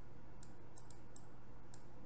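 A run of about six light, sharp clicks, irregularly spaced, from a stylus tapping on a pen tablet while a number is being hand-written, over a faint steady hum.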